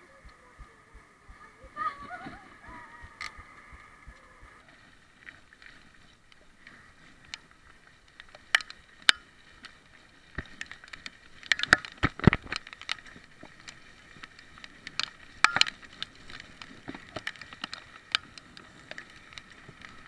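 Bicycle ridden on a wet road: irregular clicks and rattles from the bike over a low hiss, with clusters of louder clatters around the middle.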